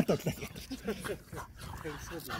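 Faint dog vocal noises from two French bulldogs at play, much quieter than the talk around them, with a voice trailing off at the very start.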